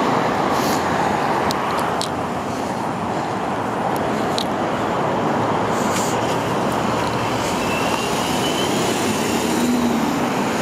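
Steady roar of freeway traffic, with a few faint sharp clicks in the first half and a faint rising squeal about three-quarters of the way through.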